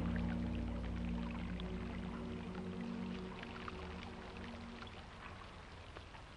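Ambient music of sustained low drone tones, fading out steadily, over faint trickling water with scattered small drips.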